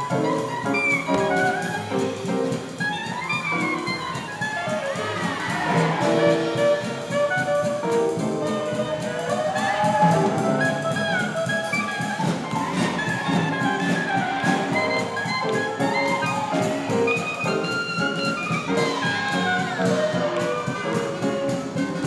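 A swing big band playing jazz, with trumpets, saxophones and trombones over a steady beat.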